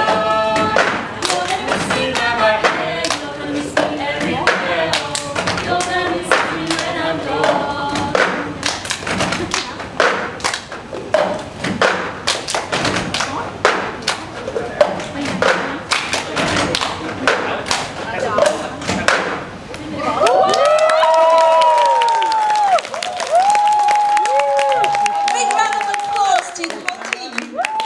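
Cup-song routine: a group slaps, taps and thumps plastic cups on a long table, with hand claps, in a quick steady rhythm, and sings over the first eight seconds or so. About twenty seconds in the cup rhythm stops, and long, wavering held voices follow.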